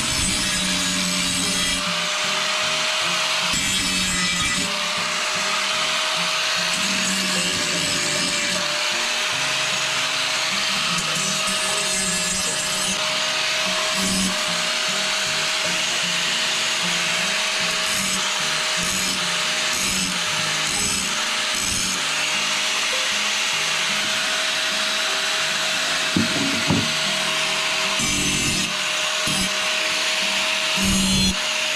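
Handheld angle grinder running continuously with a steady whine, its disc grinding the edge of a steel bar. Two brief knocks near the end.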